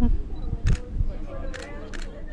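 Digital SLR camera shutter firing twice, about a second apart, each a sharp mechanical click.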